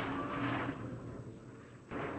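A steady hiss that comes up suddenly just before and slowly fades, with a faint hum under it. It is typical of a broadcast or radio audio channel opening before a commentator speaks.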